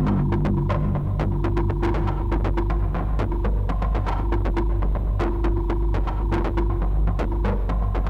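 Instrumental industrial electronic music: a steady throbbing synthesizer drone with a pulsing bass pattern, a fast run of clicks on top, and a held mid-pitched tone that drops in and out.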